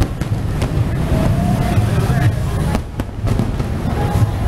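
Several sharp fireworks bangs over the noise of a busy street, with people's voices.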